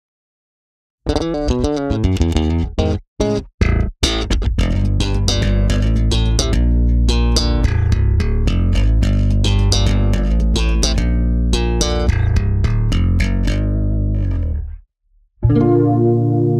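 Kiesel A2 multi-scale electric bass played solo through a bass amp. After a second of silence come a few short, clipped notes with gaps, then a fast, continuous run of notes for about ten seconds that stops just before the end. A new passage of held, sustained notes begins in the last second.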